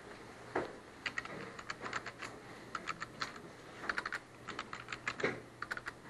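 Typing on a computer keyboard: quick, irregular runs of key clicks, some in short bursts.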